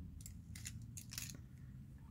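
Faint, light clicks of small plastic toy plates being slotted into a miniature dishwasher rack, several scattered through the moment.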